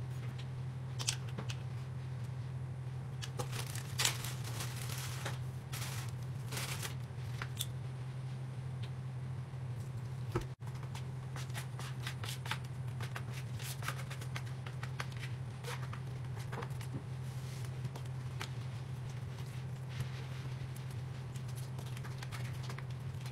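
Hands crumbling, squeezing and pressing damp soap shavings mixed with oatmeal on a tabletop into a bar: scattered soft scratchy rustles and small clicks, over a steady low hum.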